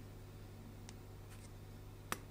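Faint light clicks of small parts of a disassembled smartphone being handled by hand: one about a second in and two more shortly after, over a steady low hum.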